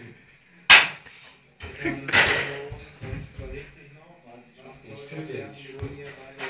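A single sharp smack about a second in, a swat at a moth, followed by indistinct voices.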